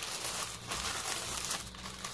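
Tissue paper crinkling and rustling as hands unfold it to unwrap a package, a steady run of small crackles.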